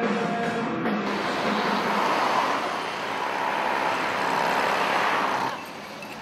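Steady road-traffic noise from passing vehicles. It comes in as the drum music cuts off about a second in and drops away shortly before the end.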